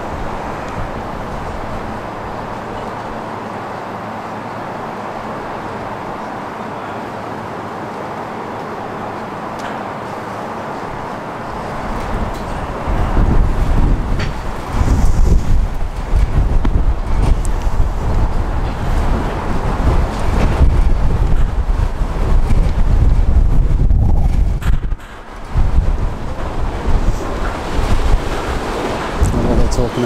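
Wind buffeting the microphone: a steady background noise at first, then gusty low rumbling from about twelve seconds in, with a brief lull just before the end.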